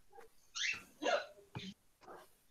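Three short, faint vocal sounds from a person over a video-call line, with near silence between them.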